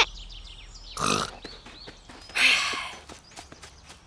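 Cartoon wild boar character grunting twice, briefly about a second in and again, longer and breathier, about halfway through.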